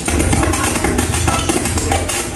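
Radio music from a Pioneer TX-9500 tuner, played through a 1979 Akai AM-2650 integrated amplifier and loudspeakers, with a heavy, steady bass.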